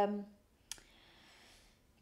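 A woman's hesitating voice trails off, then a single sharp click about three quarters of a second in, followed by a faint hiss for about a second.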